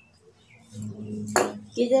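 Sewing machine running briefly with a steady low hum, broken by a single sharp metallic clink about halfway through.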